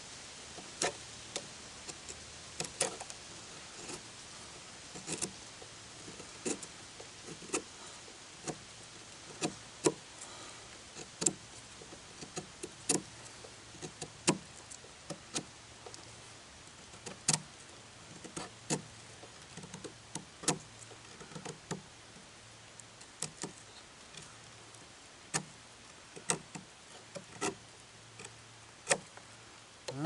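Old Timer pocket knife blade shaving curls down a dry maple stick: a long run of short, sharp scraping strokes, irregularly spaced at roughly one to two a second.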